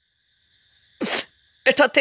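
About a second of silence, then one short, breathy burst of sound from a person, lasting about a third of a second, before recited speech resumes.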